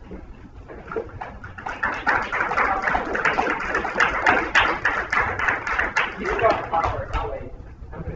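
A man speaking very rapidly in a dense, nearly unbroken stream, the fast delivery of a competitive debater, starting after a second or so and trailing off near the end.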